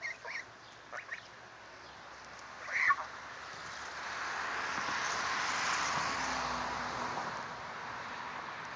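Domestic geese honking in a few short calls, the loudest about three seconds in, as the flock runs off across the grass. After that a steady hiss-like noise swells and then fades over several seconds.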